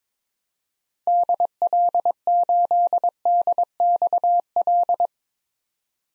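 Computer-generated Morse code tone, one steady pitch keyed in dots and dashes at 22 words per minute, sending the call sign DL8DXL in six letter groups. It starts about a second in and stops about five seconds in.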